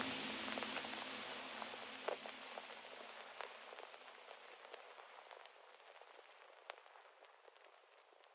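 The fade-out of an ambient chill track: a rain-like hiss with scattered crackles. The low sustained tones die away in the first few seconds, and the whole sound fades steadily toward silence.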